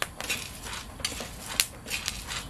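Coffee beans being stirred in a metal frying pan with a metal utensil: the beans rattle and the utensil scrapes the pan. Over this come a handful of sharp, scattered clicks, the loudest about one and a half seconds in: the popping of the beans' first crack in the roast.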